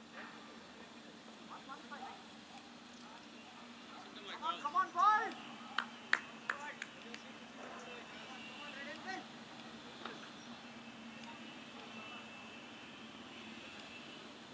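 A distant raised voice calls out, followed by a few sharp hand claps from players around the pitch, over a steady low hum.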